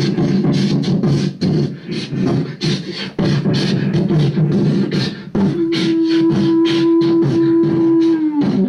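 Beatboxing into a handheld microphone, fed through a small effects box: quick clicks and hisses over a dense low pulsing layer. About two-thirds of the way through, a steady held tone joins and stays level, then starts to slide down in pitch at the very end.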